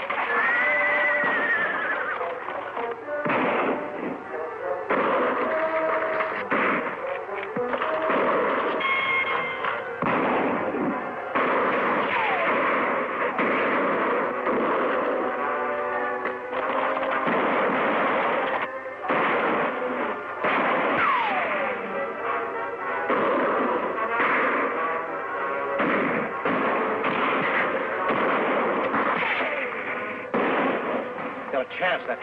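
Background film music over a gunfight: repeated rifle and pistol shots, with horses whinnying as they rear.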